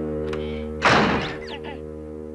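A single cartoon thunk at a wooden door about a second in, over a held music chord.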